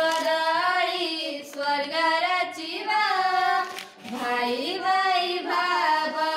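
Three young girls singing together in long held melodic phrases, with a short breath pause just before four seconds in.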